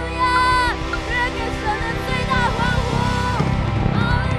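Live band music: an electric bass and a drum kit playing under a sung line of held notes.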